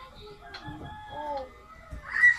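A faint animal call, drawn out and wavering in pitch, lasting over a second.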